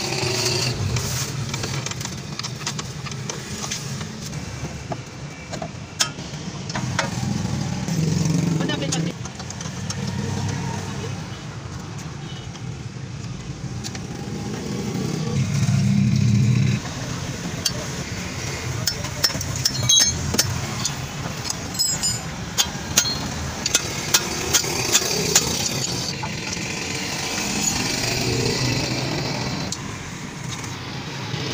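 Metal clinks and sharp clicks from hand work on a car's rear drum-brake assembly, with a quick run of clicks about two-thirds of the way through. Under them is a low vehicle rumble that swells and fades, loudest just past the middle, and voices in the background.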